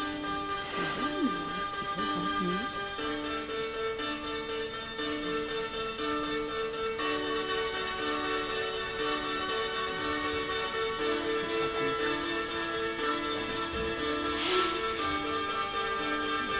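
Electronic music played by a monome grid controller, heard from a demo video over the hall's speakers: a repeating pattern of short notes at a steady pulse, joined about three seconds in by a held higher tone. A brief hiss sounds near the end.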